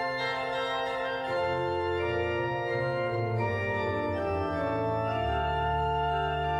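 Pipe organ playing sustained chords. Bass notes come in about a second in, and a deeper pedal note comes in near the end.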